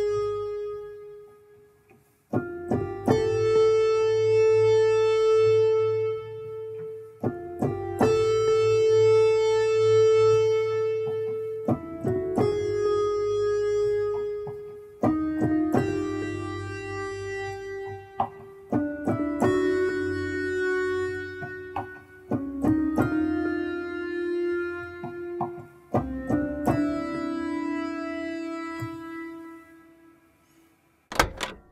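Bell-toned chord from the Mai Tai software synth, played from a Roland A-49 MIDI keyboard: the same keys struck about every four seconds, each chord ringing out, the pitch stepping lower from one chord to the next as the keyboard's transpose is shifted by semitones.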